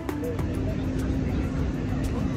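Low rumble of wind buffeting a phone microphone, over faint, indistinct chatter of people around.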